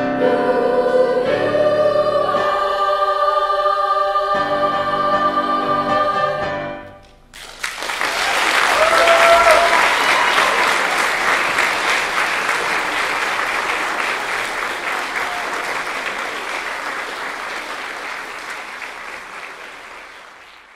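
A junior high treble choir sings the closing chords of a song, held and ending about six and a half seconds in. After a short pause the audience applauds, with a brief cheer early on, and the applause gradually fades out.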